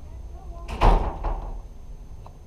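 A door banging shut once, a little under a second in, with a short echo after it.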